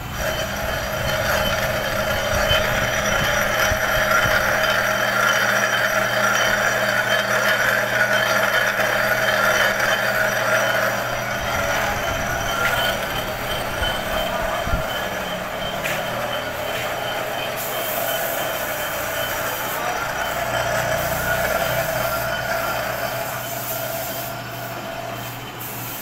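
Metal lathe running while a boring bar cuts inside the hub of a cast idler pulley, re-boring the bearing seat: a steady machine hum with a hissing cutting noise on top. The cutting noise is strongest in the first third and eases off after about eleven seconds.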